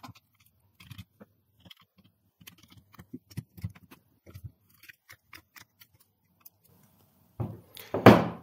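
Handheld hydraulic crimper being pumped to crimp a copper cable lug: a run of small, irregular clicks and creaks from the handles and jaws that stops a little before the end.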